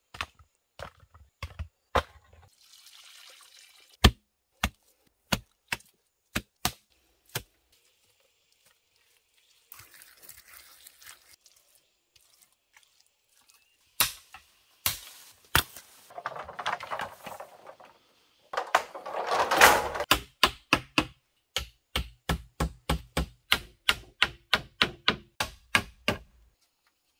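A hand tool striking wood in sharp, irregular blows, with short stretches of scraping in between. Near the end the blows come in a quick, steady run of about three a second.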